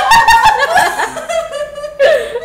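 Several people laughing, high-pitched and loud at first, then tailing off.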